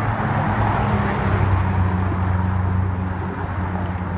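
Ferrari 458's V8 engine running at low revs as the car drives slowly past, a steady low engine note over tyre and road noise, loudest about a second and a half in.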